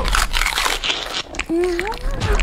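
A cartoon pony crunching a carrot that it bites from a baby's mouth, for the first second or so. A short vocal sound with a rising pitch follows near the end.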